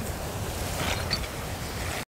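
Rough surf washing over a rocky shoreline in a steady rush, with wind on the microphone.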